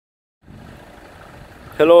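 Faint, steady, low engine rumble that starts about half a second in; a man's voice says "Hello" near the end.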